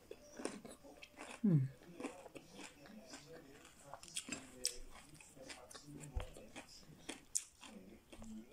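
Close-up chewing and biting of crunchy batter-fried fish, with small crunches and mouth clicks throughout. A short falling "mmm" from the eater comes about one and a half seconds in.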